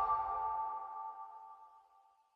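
The tail of an electronic logo sting: a few bright, bell-like tones ringing on and fading away over about a second and a half.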